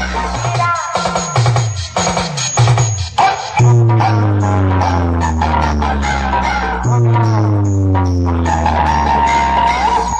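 Loud electronic dance music played through a large DJ speaker stack, with heavy bass notes that slide downward in pitch. A choppy, stop-start passage in the first few seconds gives way to long falling bass notes.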